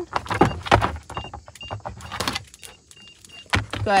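A Belgian Malinois scrambling into a car's trunk: claws clicking and paws thudding on the rubber cargo liner. Over the scrambling, an e-collar gives its tone cue as a series of short, high beeps, all at one pitch.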